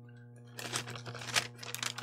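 Paper food packaging rustling and crinkling, with many light clicks, growing busier toward the end, over a steady low hum.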